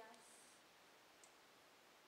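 Near silence: room tone. The end of a child's spoken word falls at the very start, and a faint tick comes about a second in.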